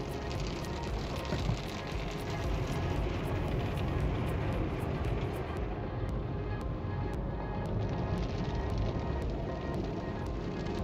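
Automatic car wash heard from inside the car: a steady rush of water and foam spraying onto the windshield, with music playing over it.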